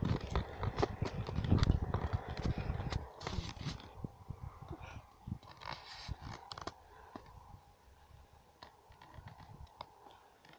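Rustling and clicking handling noise close to the microphone of a hand-held camera. It is heaviest in the first three seconds, with a low rumble, then thins to faint scattered clicks.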